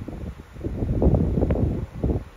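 Wind buffeting the microphone: an irregular low rumble that swells about half a second in and stays strong through the second half.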